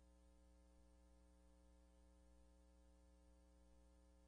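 Near silence: a faint, steady electrical hum with a low buzz of evenly spaced overtones, unchanging throughout.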